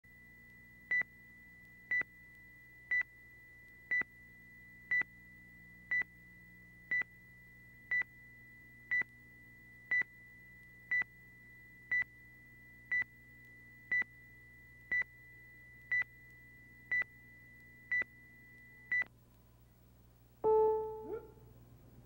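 A short, high electronic beep repeats once a second, nineteen times, over a faint low hum. This is a timing beep on the tape leader ahead of the programme. Near the end a single brief, louder note sounds and quickly dies away.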